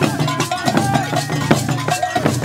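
Traditional percussion music: a fast, dense rhythm of struck bell and drum strokes over a steady low drone, with short pitched notes riding on top.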